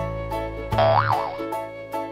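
Cheerful background music with a cartoon boing sound effect about a second in, its pitch sweeping up and back down.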